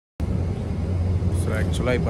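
A moment of dead silence, then a steady low outdoor rumble cuts in suddenly; a man's voice starts speaking over it about a second and a half in.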